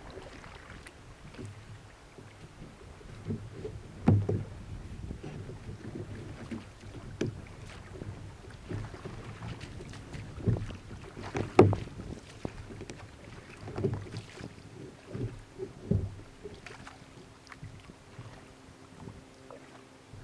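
Water slapping and sloshing against a kayak's hull as it moves through chop, with irregular louder thumps every few seconds, the loudest about four and eleven and a half seconds in. Wind on the microphone.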